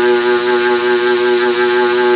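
Micromotor with a hammer handpiece running, its reciprocating tip worked lightly over leather for shading: a steady buzz of one even pitch.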